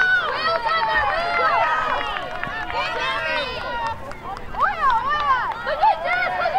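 Several high-pitched voices shouting and calling over one another during lacrosse play, from players and sideline spectators.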